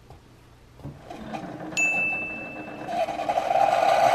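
Keurig single-serve coffee maker brewing: its pump hums and the coffee streams into a mug, growing louder over the last second or so. A high steady tone sounds for about a second partway through.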